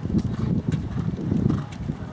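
A horse's hooves cantering on a sand arena: a run of dull, uneven thuds.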